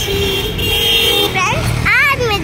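A vehicle horn sounds in traffic, one flat held blast of just under a second starting about half a second in, over steady road and engine noise. A girl's voice follows near the end.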